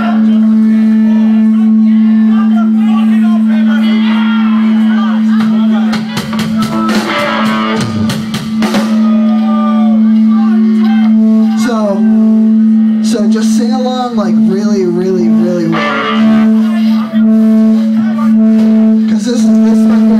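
Live band electric guitars playing: picked notes over one steady held low tone, with voices shouting along over the music.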